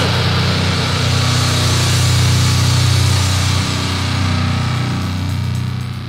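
Death metal song ending on one held distorted chord that rings out. It fades gradually over the last couple of seconds.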